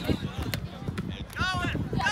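Voices calling across an outdoor soccer field, with a high-pitched shout about one and a half seconds in and a few short knocks before it.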